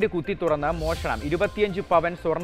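A newsreader speaking Malayalam over a music bed, with a brief hiss about half a second in.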